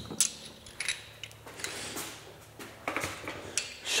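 Scattered light metallic clinks and rattles from a socket wrench being picked up and handled, with a few sharp clicks and some rustling.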